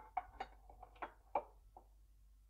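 A large ceramic bowl being shifted on a kitchen counter: a run of about seven faint, short knocks and clicks over a second and a half, then it settles.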